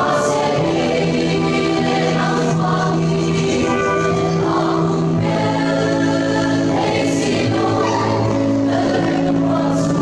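Mixed church choir of young men, young women and older men singing a hymn together in long, held chords.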